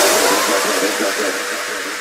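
Drum-and-bass track fading out: the beat and bass stop, leaving a hissing wash of synth noise with faint held tones that dies away steadily.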